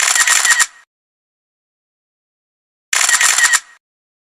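Camera-shutter sound effect: a rapid burst of clicks lasting under a second, heard twice, about three seconds apart.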